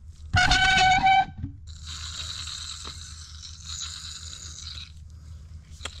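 The piston rod of a combine swing-auger hydraulic cylinder being drawn out of its oily barrel by hand: a short, loud, steady squeal about half a second in, then a steady hiss for about three seconds.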